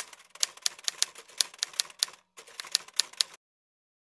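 Quick, even run of light, sharp clicks, about four or five a second, that stops abruptly about three and a half seconds in.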